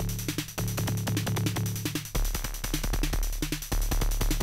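Make Noise 0-Coast synthesizer patched as a kick drum and bass hybrid, playing a busy electronic pattern. Sharp kick clicks come in a quick, even rhythm over a sustained pitched bass tone. About halfway through, the bass drops to a lower note and gets louder.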